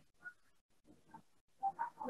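Faint, short murmured voice sounds: three or four brief hums or mumbles with quiet gaps between them, the last ones near the end a little louder.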